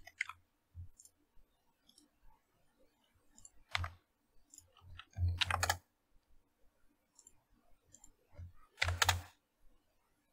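Quiet, scattered computer keyboard and mouse clicks, with three louder short noises about four, five and a half and nine seconds in.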